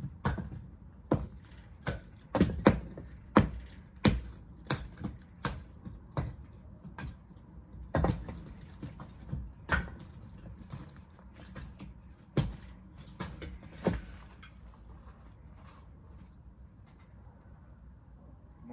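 An old brick wall being knocked apart by hand: a run of irregular sharp knocks and clatters as bricks are struck, break loose and drop onto rubble, about one to two a second. The knocks thin out after about fourteen seconds.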